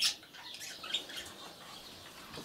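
Caged budgerigars giving short chirps and squawks, the loudest right at the start and another about a second in.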